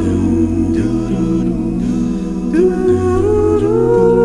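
One man's multi-tracked voice singing a cappella: wordless layered harmony parts over a vocal bass line that steps to a new note about once a second. The upper voices rise in pitch near the end.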